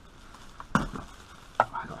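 Plastic bubble wrap and paper packaging crinkling as a parcel is handled, with one sharp loud crackle about three-quarters of a second in and a shorter one near the end.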